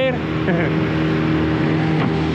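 A dinghy's outboard motor running steadily at speed, a constant hum under the rush of water and wind. A short laugh comes right at the start.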